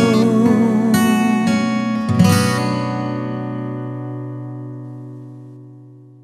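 Acoustic guitar playing the closing notes of a song. A few plucked notes lead to a final chord about two seconds in, which rings on and fades out slowly.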